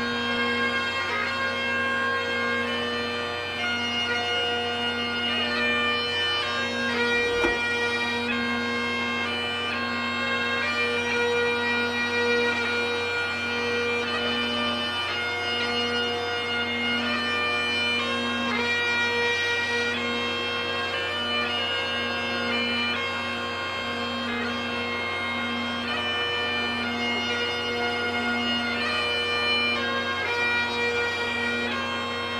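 Bagpipes playing a slow tune: a steady drone holds one low pitch under a melody of long held notes on the chanter.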